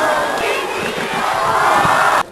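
Arena crowd screaming and cheering loudly in reaction to a wrestler's dive out of the ring onto opponents at ringside.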